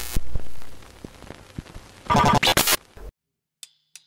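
An electronic intro sting with a synthesizer tone that ends about half a second in, then a short glitchy burst around two seconds. It cuts to near silence, and near the end come the first sharp clicks of a drumstick count-in.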